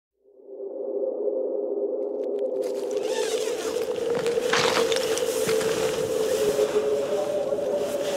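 A sustained droning tone from a film score fades in from silence. After about two and a half seconds a rushing hiss joins it, swelling briefly a little later.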